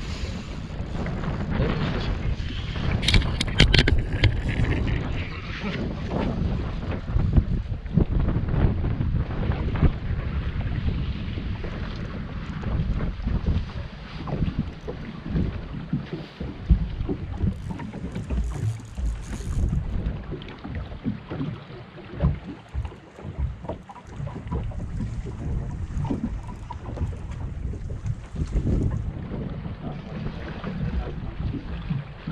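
Wind buffeting the camera microphone on an open bass boat, an uneven low rumble throughout, with a few sharp clicks about three seconds in.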